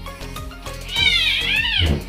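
An infant crying: one high wail about a second long starting halfway through, rising then dropping away, over background music.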